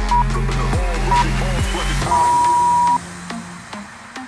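Workout interval-timer beeps over electronic workout music: two short beeps a second apart, then one long beep marking the start of the next exercise interval. The music's heavy bass beat drops out at the long beep, and the music carries on more quietly.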